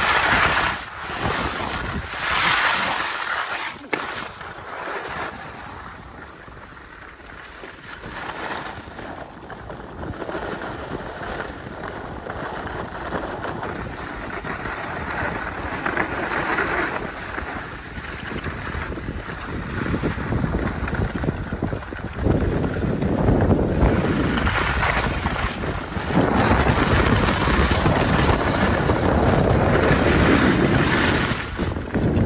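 Wind rushing over a phone microphone and skis sliding and scraping on groomed snow during a downhill ski run. The rush dips for a few seconds about four seconds in, then grows louder and deeper over the last eight seconds as speed builds.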